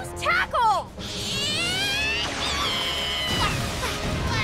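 Cartoon battle sound effects over background music: a short voiced cry at the start, then a rising, shimmering sweep as Sprigatito's Leafage attack is launched, ending in a high held tone.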